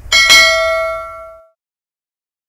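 Notification-bell 'ding' sound effect: a bright, loud bell tone that rings out and fades away within about a second and a half.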